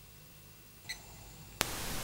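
Faint low hum with a small click, then a sharp click about one and a half seconds in as the soundtrack cuts to a louder, steady hiss. This is an edit between two camcorder clips.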